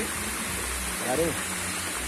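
Steady rushing of water from a small waterfall falling over rocks into a creek.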